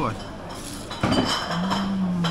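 A man eating a piece of battered fried meat off a fork: a few sharp clicks of fork and plate about a second in, then a long hummed 'mmm' of approval that falls slightly in pitch.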